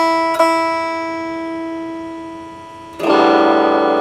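Stratocaster-style electric guitar: a chord struck twice near the start and left ringing, slowly fading, then a fuller, louder strum about three seconds in.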